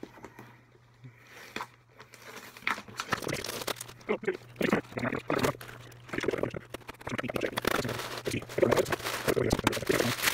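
A taped cardboard shipping box being cut and opened with a knife, the blade scratching through packing tape, then cardboard and packing paper rustling and crinkling. The crackling starts about two seconds in and grows louder toward the end.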